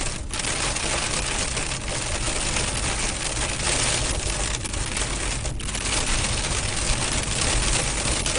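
Pea-size hail pelting a vehicle's windshield and roof, heard from inside the cabin: a dense, continuous clatter of small ice impacts at heavy rates.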